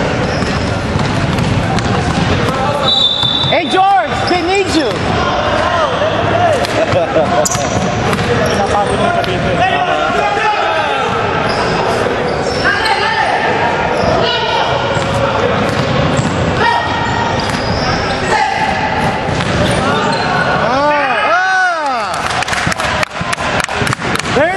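Basketball dribbled and bouncing on a hardwood gym floor during a game.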